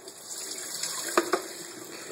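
Water poured from a bowl into a stainless steel colander in a sink, splashing steadily as soaked tea seeds are drained. There are two short knocks a little after a second in.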